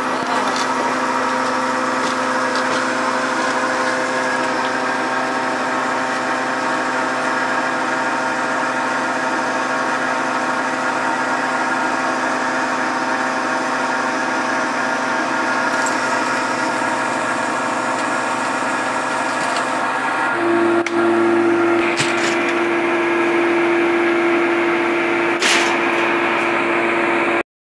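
Electric motor and hydraulic pump of a scrap-tin baling press running with a steady hum. About twenty seconds in, the hum changes to a louder, higher steady tone, and a couple of brief knocks follow near the end.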